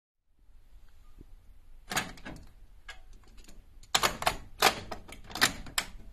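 A string of sharp clicks and clunks from a Sony CMT-SPZ90DB micro hi-fi system being handled, starting about two seconds in and coming irregularly, several close together.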